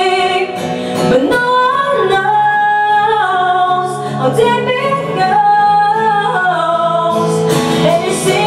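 A woman singing a melody into a microphone, with held notes, accompanied by strummed acoustic guitar in a live performance.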